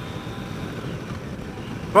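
Yamaha FJR1300 inline-four motorcycle cruising steadily along a road, its engine running under a steady rush of wind noise.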